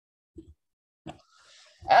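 A pause in a man's speech, broken by two brief soft low thumps, then his speech resumes near the end.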